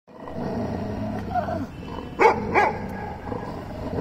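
A dog growling low and steadily, then barking twice in quick succession about halfway through, at a face-off with another dog.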